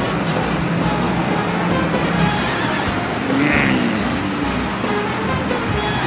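Steady city street traffic noise mixed with background music.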